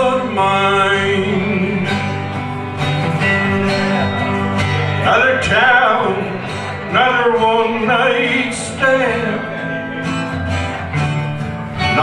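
Live country song played on two acoustic guitars, a Harmony Sovereign Jumbo and a Gibson Southern Jumbo, strummed and picked together at a steady moderate loudness.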